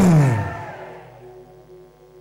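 The end of a man's loud, drawn-out shout through a microphone, its pitch falling until it stops about half a second in. After it, faint held musical tones linger and fade.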